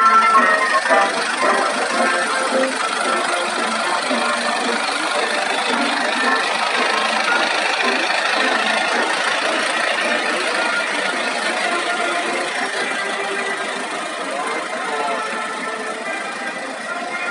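Music playing over horn loudspeakers on passing trucks, with vehicle engine noise beneath; it grows a little quieter toward the end.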